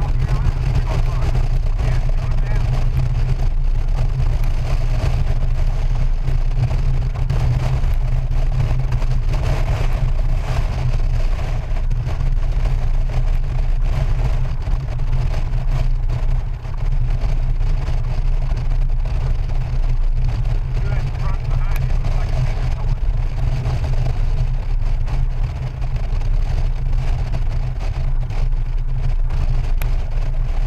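Steady wind rush and buffeting on the microphone of a Honda Gold Wing GL1800 touring motorcycle riding at highway speed, with the bike's flat-six engine running underneath.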